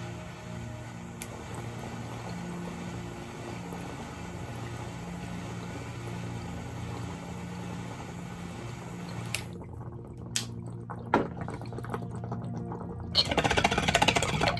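Bong water bubbling as vapour is drawn slowly through it, under the steady hiss of a torch flame heating a Lotus manual vaporizer, over quiet background music. The hiss stops abruptly about nine seconds in, followed by a couple of light clicks.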